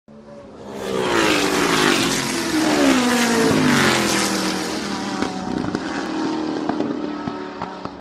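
A rally car engine running hard, fading in over the first second, its pitch sweeping down over the next few seconds, then running steadier, with a few sharp cracks in the later seconds.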